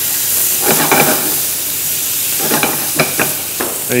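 Baby squid rings sizzling in very hot olive oil in a frying pan, a steady hiss that turns briefly louder about a second in and again around three seconds.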